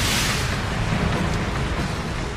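A big explosion sound effect: a loud, hissing blast right at the start that settles into a steady, heavy rumble.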